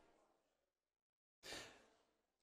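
Near silence, broken by two faint puffs of breath-like noise, the second about a second and a half after the first, each fading away over about a second.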